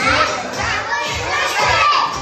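A group of young children singing loudly together, several voices at once in a large hall.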